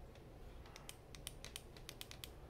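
Faint, light, irregular clicking, several clicks a second, beginning about half a second in, like keys or buttons being pressed.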